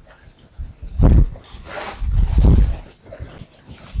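A whiteboard duster being wiped across the board, heard as a few soft rubbing swishes, the loudest about one, two and two and a half seconds in.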